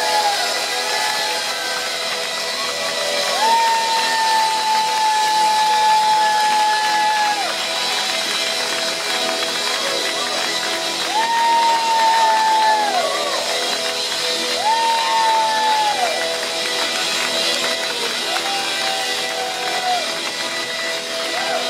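A live band playing on at the close of a song while the crowd cheers and shouts. Long held notes of several seconds each slide in and fall away at their ends, over a dense wash of crowd noise.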